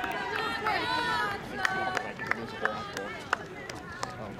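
Spectators talking and laughing close by outdoors, with four sharp clicks in the second half.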